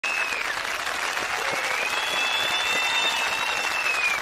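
Audience applause played in reverse: a dense, even patter of clapping. A thin high whistle-like tone dips near the start, then glides up about a second and a half in and holds above the clapping.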